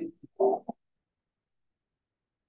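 A man's voice trailing off in a brief murmur under the first second, then dead silence.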